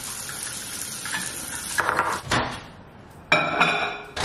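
A spoon stirring oats and water in a bowl, scraping and clinking against the sides, then a short, louder burst of sound near the end.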